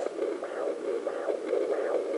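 Fetal doppler loudspeaker playing repeated pulsing swishes of blood flow picked up from the mother's own artery: her pulse, not the baby's heartbeat.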